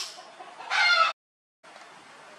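A sharp click, then about three quarters of a second later a short, loud, high-pitched animal call that cuts off abruptly into a brief dead silence.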